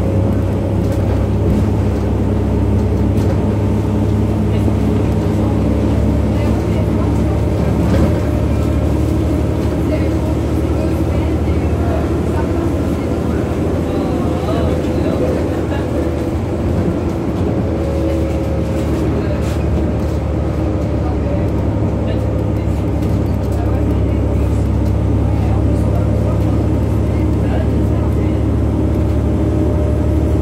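VDL Citea CLF 120 city bus underway, heard from inside: the steady low drone of its engine and drivetrain with road noise, easing slightly about halfway through and building again.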